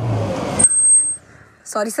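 A car sweeps by close: a short rushing swell with a low hum that cuts off suddenly under a second in, followed by a brief high, thin tone. A woman's voice starts near the end.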